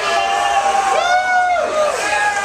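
A concert crowd cheering and shouting between songs, with one voice holding a long yell about a second in that falls off before the end.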